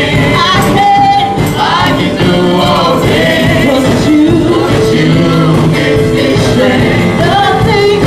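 Live gospel praise-and-worship music: a choir singing loudly and steadily with instrumental accompaniment.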